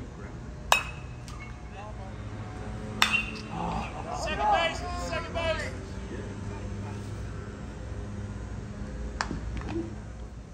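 Sharp clinking impacts on a baseball field: a ping with a short ring about 0.7 s in, and a second sharp crack about 3 s in that is followed by voices shouting for a couple of seconds. A fainter click comes near the end.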